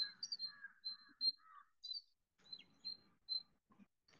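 Faint bird chirps repeating in the background, short high notes with smaller calls between them, and a weak low murmur in the second half.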